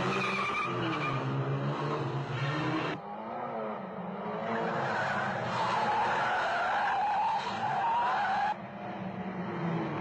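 Car engines revving hard with tyres squealing in wavering, high-pitched skids during a car chase. The sound changes abruptly about three seconds in and again near the end, as the soundtrack cuts between shots.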